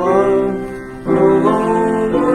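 Keyboard music playing held chords, moving to a new chord about a second in.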